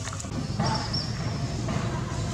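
A steady low rumble that swells about half a second in, with a brief faint high whistle near the middle.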